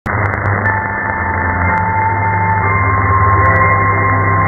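Music received over a shortwave AM broadcast through a software-defined radio, dull-sounding with its treble cut off by the narrow AM filter. The music has long held notes that change about halfway through, with a few faint static clicks.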